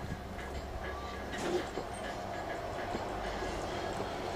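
Steady low background rumble with a faint hum and a few faint clicks.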